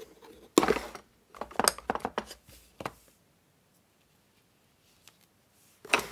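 Hands rummaging in a wooden drawer of craft supplies. A short scraping rustle comes about half a second in, then a few light clicks and rustles, then quiet for about three seconds.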